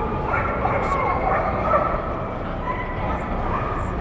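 A dog yipping and whining, in short pitch-bending cries that come mostly in the first half, over a constant din of voices.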